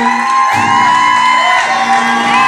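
Live country band of guitars and a steel guitar playing instrumentally at the close of a song, long held high notes sliding up into pitch and back down over steady lower notes.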